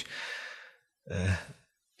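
A man breathing between sentences: a soft exhale like a sigh, then about a second in a short intake of breath with a little voice in it.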